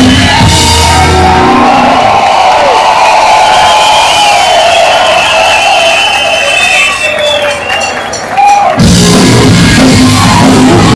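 Skate-punk band playing live through a loud PA; after about a second and a half the bass and drums drop out, leaving the crowd's voices and thinner music, and the full band crashes back in near the end.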